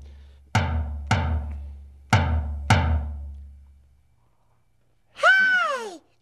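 A small drum struck four times with a mallet, in two pairs about half a second apart, each hit leaving a low boom that fades out. Near the end a voice calls out, its pitch rising and then falling.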